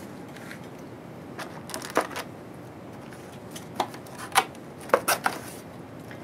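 Scattered light clicks and taps of plastic and foil test-kit parts being handled and set down on a lab bench, the loudest few bunched in the second half.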